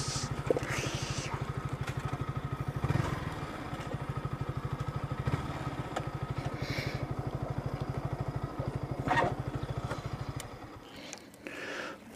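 Motorcycle engine running at low revs with a fast, even low pulse, then cutting out near the end.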